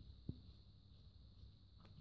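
Near silence with a faint steady hiss. A single soft snip of scissors cutting black fabric comes about a third of a second in, and a fainter tick comes near the end.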